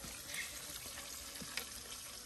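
Faint steady hiss like running water or a low sizzle, with a couple of light clicks.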